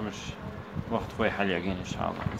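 A person's voice speaking, mostly in the second half, over a steady low buzz.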